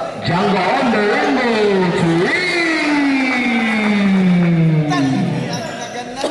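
Spectators' voices shouting and calling out without clear words, several at once at first. About halfway through, one long drawn-out call slides steadily down in pitch for nearly three seconds.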